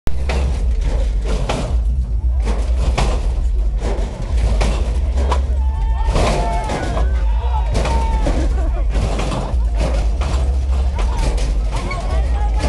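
A crowd of voices talking and calling out over loud, bass-heavy music, with frequent sharp knocks running through it.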